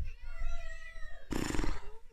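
A small puppy whining in pitched, rising and falling whimpers, then a louder, rougher yelp about a second and a half in.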